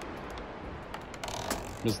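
A door's latch and lock clicking and rattling as the door is unlatched and opened, a few sharp clicks over a steady background hiss.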